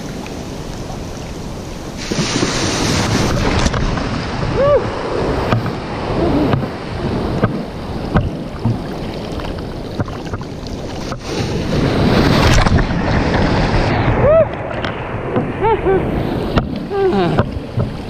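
Ocean surf washing around a person wading through shallow water, with two louder surges of rushing foam, one about two seconds in and one about twelve seconds in, and short bubbling gurgles of water close by in the second half. Wind on the microphone.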